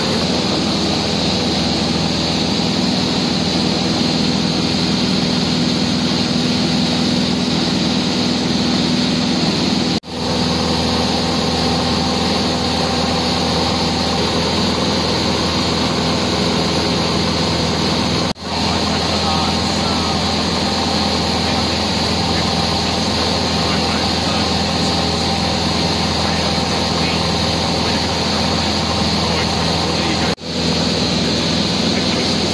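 Single-engine light aircraft's engine and propeller droning steadily, heard from inside the cockpit in flight. The sound cuts out briefly twice, about ten and eighteen seconds in.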